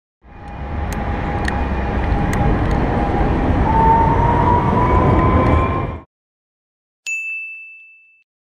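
Running noise of a modern electric tram passing close by: a rumble with a whine rising slightly in pitch, which cuts off suddenly. About a second later a bell rings once and fades.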